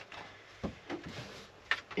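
A few short knocks and clicks of a plastic-cased portable air-conditioner unit being handled and lifted.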